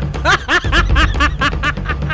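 A person laughing in a quick run of about ten short, high 'ha' syllables, over a low background music bed.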